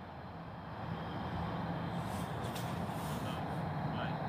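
A steady low rumble of background noise, a little louder from about a second in.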